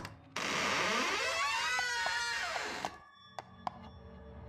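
Door creaking open as a sound effect, a wavering creak lasting about two and a half seconds, followed by two short clicks.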